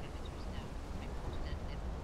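Outdoor ambience: a steady low rumble with short, scattered bird chirps.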